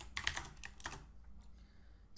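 Computer keyboard typing: a quick run of keystrokes in the first second as a line of code is typed.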